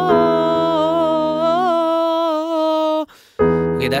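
A man sings a long held "whoa" with a slight waver in pitch over a sustained piano chord, breaking off about three seconds in. A new piano chord is struck just before the end.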